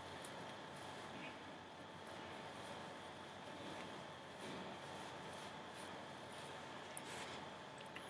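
Very quiet room tone, a faint steady hiss with a thin steady tone, over faint rustling of a synthetic lace front wig's hair being fluffed and adjusted by hand.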